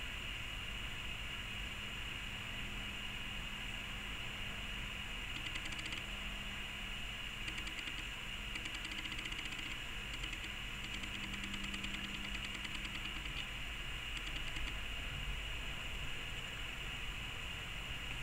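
Steady background hiss with a faint low hum, plain room tone, with faint rapid ticking through the middle stretch.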